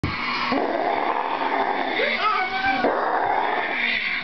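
A person's voice making playful growling noises, as in a chase game, with a held, higher-pitched stretch about halfway through.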